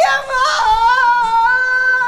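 A woman wailing in a loud, high crying voice: a short falling cry, then one long held note.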